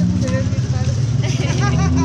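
A steady low motor hum, like an idling engine, with short snatches of voices in the second half.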